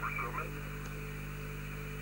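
Steady mains hum with a faint hiss underneath, and a brief faint trace of a voice in the first half second.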